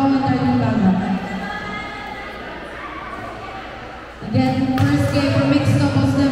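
Amplified voice through a large hall's public-address system. It breaks off about a second in and comes back about four seconds in, with quieter hall and crowd noise in the gap.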